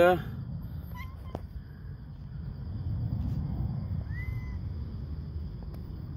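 A house cat meowing faintly: a brief call about a second in, then a short meow that rises and falls about four seconds in, over a steady low rumble.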